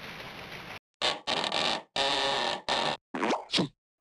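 Comic sound effect in about six short bursts with silent gaps between, the last ones falling in pitch, after a moment of faint room noise.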